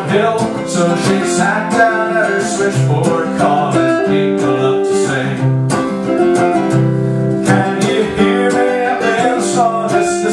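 Solo archtop guitar playing an instrumental passage between sung lines, strummed chords in a steady rhythm with picked melody notes over them.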